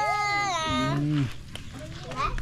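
A long, high-pitched animal cry with a wavering pitch that drops and stops about a second in, with a low human hum beneath it as it ends.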